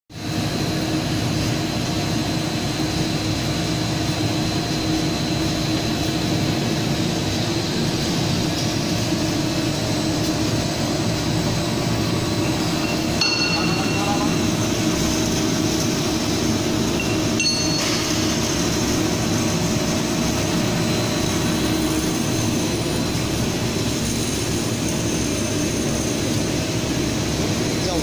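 EPE foam sheet extrusion line running: a steady machine drone with a faint high whine, broken twice by brief dropouts.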